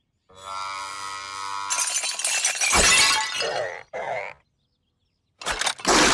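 Cartoon sound effects: a held pitched tone, then a loud crash of something breaking, a short second burst, and another crash near the end.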